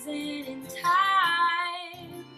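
A woman singing a slow ballad, accompanied by acoustic guitar and fiddle. A high sung note swells about a second in and is the loudest part, then fades.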